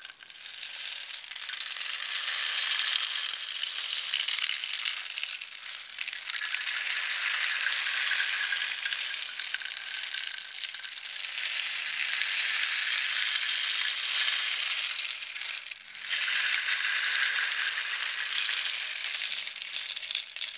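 Wooden rain stick tilted slowly so its filling trickles down inside it, giving a long, gradual, sustained rain sound: a steady high hiss of tiny pattering grains. It breaks off briefly about three-quarters of the way through, then runs on again.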